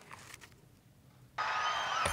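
Near silence with faint paper handling as pages are turned at a lectern. About two-thirds of the way in, the sound of a played video clip cuts in suddenly as a steady noisy hiss of outdoor ambience.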